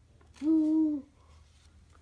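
A voice making one short, steady hummed 'ooh' tone, held for about half a second a little after the start.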